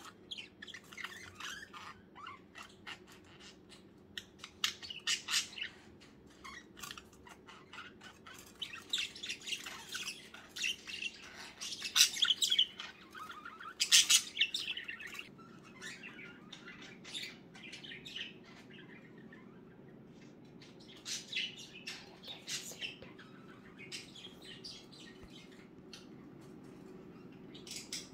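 Pet budgerigars chirping and warbling in their cage: a busy run of short, high chirps, loudest around the middle, thinning out after that.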